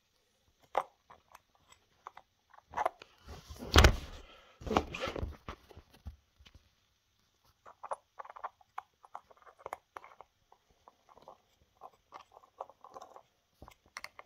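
Handling noise of a Dremel cut-off wheel and small metal mandrel being fiddled with: scattered small clicks and taps, with louder bursts of rubbing and knocking about four to five seconds in.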